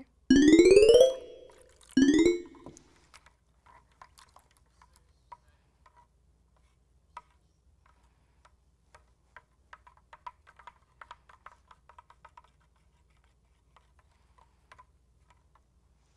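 Two loud rising whistle-like glides, a cartoon-style sound effect: one just after the start lasting about a second, and a shorter one about two seconds in. After that, faint, irregular light ticks of a wooden stick stirring glue and water in a glass bowl.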